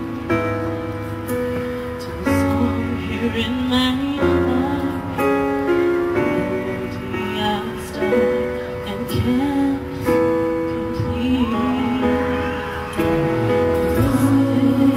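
A woman singing over backing music, holding long notes.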